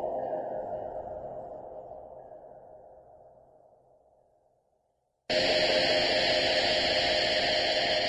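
Horror film score over the opening credits: an echoing pitched hit that fades away over about four seconds, then silence, then a sudden loud held chord of several tones that starts about five seconds in.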